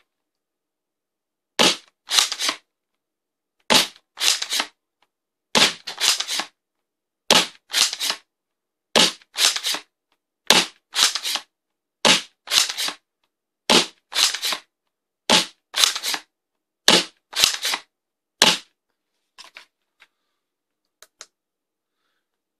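Worker Seagull spring-powered foam dart blaster, with a 310 mm barrel and 250 mm spring, fired and re-primed eleven times at a steady pace. Every 1.6 s or so comes one sharp snap and then a quick double clack about half a second later. The shooting stops near the end, leaving a few faint clicks.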